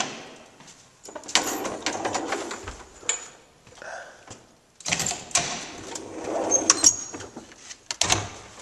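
The metal collapsible scissor gate and wire-mesh doors of an old cage elevator being worked by hand: rattling and clanking with sharp knocks, in two bouts with a short lull between.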